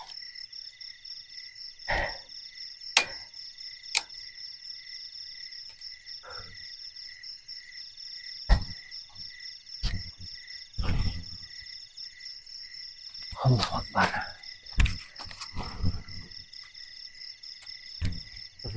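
Night insects, crickets among them, chirping in a steady pulsing chorus of high tones. Scattered knocks and rustles sound over it, a cluster of them about three-quarters of the way in.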